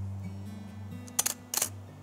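Pentax 6x7 medium-format SLR firing a quarter-second exposure about a second in: two sharp clacks about a third of a second apart as the shutter opens and closes, with the mirror flipping up and returning. Background music with low plucked guitar notes runs underneath.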